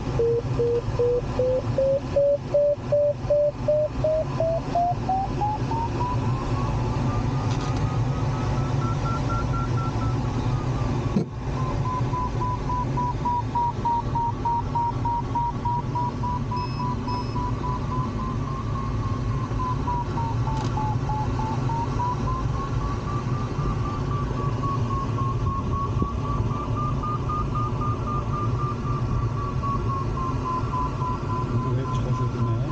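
Glider variometer's audio tone, beeping at first, its pitch rising over the first ten seconds and then wavering up and down around a steady high pitch: the sign of the glider climbing in a thermal, with a higher pitch for a stronger climb. Under it runs a steady rush of airflow over the cockpit, and there is a single sharp click about eleven seconds in.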